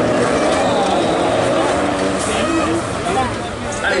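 A pack of Renault Clio rallycross cars racing on a wet track, their engines running together, mixed with people talking.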